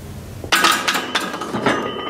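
A loaded barbell racked onto the steel uprights of a bench press: a sudden metallic clank about half a second in, several clinks of bar and plates, and a ringing that fades over the next second.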